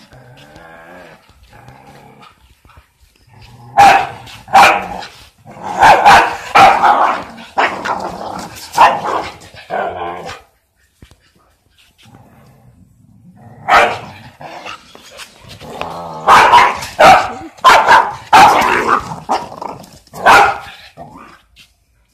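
A dog growling low at first, then barking loudly in two bouts of sharp, separate barks with a short quiet spell between them, aimed at a rooster that is facing it down.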